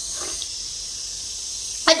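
A short sip of hot rice porridge from a bowl near the start, over a steady high hiss.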